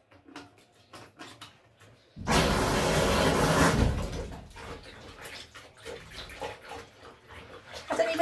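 Water from a bathtub faucet gushing into a bucket of dye bath for about two seconds, then turned down to a much quieter run. Small clicks and taps come before it.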